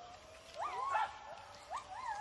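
White-handed gibbon calling: a steady held note with short rising-and-falling whoops breaking out of it, one about half a second in, another around a second, and another near the end.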